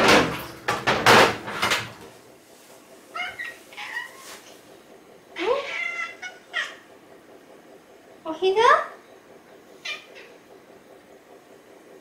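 A black domestic cat meowing over and over in a rising, talkative way, about five meows. The one just before the end sounds like "o-hi-za" ("lap"), because the cat is asking to be picked up onto a lap. The first two seconds hold a loud clatter of kitchen knocks.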